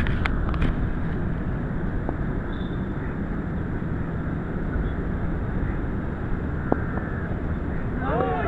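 Steady low rumble of wind buffeting the camera's microphone on an open ground, with a few faint clicks, one of them near the end.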